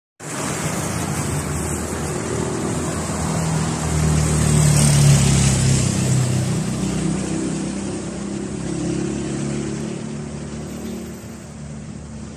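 A motor vehicle's engine running with a noisy rush, growing louder to a peak about five seconds in and then slowly fading.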